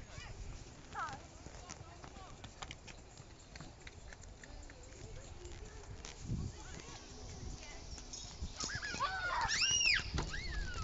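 Footsteps and light knocks on a metal playground ladder and structure as a child climbs, over a low rumble of handling or wind. Near the end comes a high-pitched squeal that rises and then falls.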